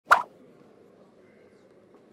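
A single short, sharp pop just after the start, then only a faint background murmur.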